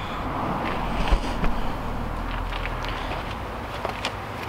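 Steady low outdoor rumble with a few faint knocks and clicks of the camera being handled and footsteps on concrete.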